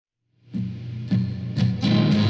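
Opening of a song: silent for the first half second, then a guitar plays four chords, one about every half second.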